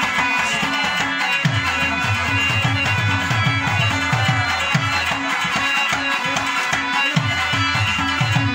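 Instrumental passage of live Pashto folk music: tabla and hand drums keep a fast, steady rhythm, many of the bass strokes sliding down in pitch, under a sustained melody from a keyboard and a plucked lute.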